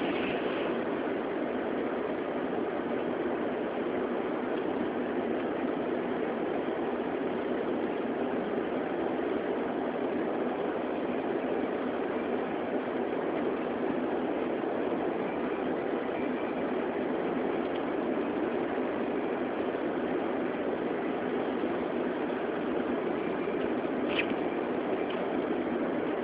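Steady driving noise heard inside a car's cabin: engine and tyres running on a wet, snow-covered road, an even rushing sound that stays unchanged throughout.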